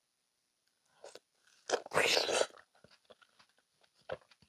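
A close-miked bite into a fresh strawberry dipped in yogurt: one loud crunching bite about two seconds in, followed by faint chewing clicks.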